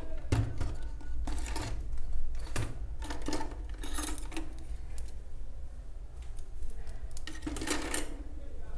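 Crochet work being handled: a metal crochet hook and yarn rustle and click in short, irregular bursts over a steady low hum in the room.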